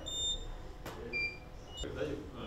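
Three short, high electronic beeps at different pitches and two sharp clicks about a second apart. These are typical of a camera shutter firing and studio gear beeping.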